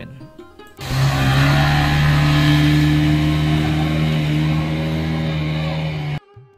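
Motorboat engine running at a steady speed, with the rush of churned water, starting about a second in.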